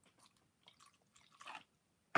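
Near silence: rubbing alcohol being poured from a plastic bottle into a plastic cup, heard only as a few faint ticks and a slightly louder soft sound about one and a half seconds in.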